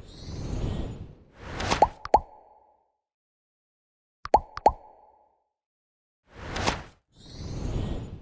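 End-screen editing sound effects: a series of whooshes and two pairs of quick plopping pops, the pairs about two seconds apart, with silent gaps in between.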